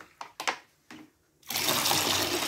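A few sharp clicks and knocks as a plastic bottle is handled, then about one and a half seconds in, water starts pouring steadily from the bottle into a plastic bucket.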